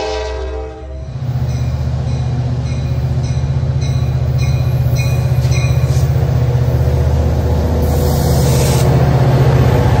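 Diesel locomotive horn ending about a second in, then an NCTD Coaster F59PHI locomotive's diesel engine running loud and steady, growing louder as it approaches and passes close by.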